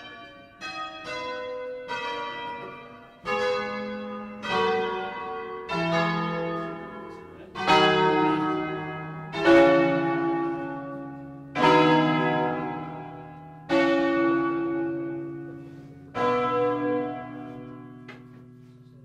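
Church bells of a ten-bell tower rung by rope, one bell at a time: about a dozen separate strikes, each ringing on and fading. The strikes come further apart and get deeper as the sequence moves down to the larger bells.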